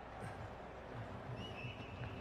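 Faint ambient sound from a televised cricket match as a bowler runs in: a low, even background noise. About halfway through, a thin, high, wavering tone joins it.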